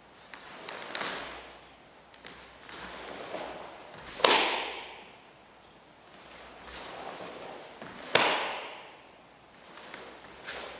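A karate gi swishing through the Heian Yondan kata, with two sharp cracks about four seconds apart from strikes and the uniform snapping. Each crack rings on briefly in the large hall.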